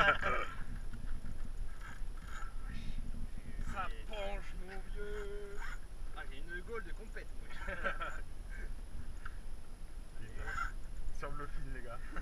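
Men's voices calling out and talking in short bursts over a low steady rumble.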